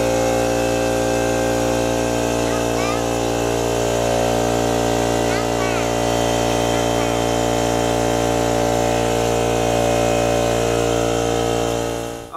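Kobalt 8-gallon electric air compressor switched on and running steadily, its motor and pump filling the tank with air, a loud steady hum. It stops near the end.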